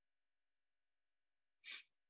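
Near silence, broken by one short, soft breath out through the nose about one and a half seconds in.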